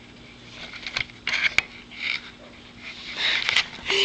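A nine-week-old Newfoundland–Great Pyrenees–Border Collie mix puppy sniffing and breathing close to the microphone in short, irregular bursts after a quiet first second. A couple of sharp clicks come with them.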